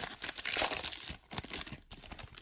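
Foil wrapper of a Donruss Elite football card pack crinkling in the hands as it is peeled back from the cards, a dense run of crackles that thins out near the end.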